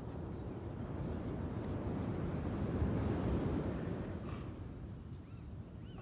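Wind buffeting the microphone on an open beach, a low uneven rumble that swells about three seconds in and then eases off.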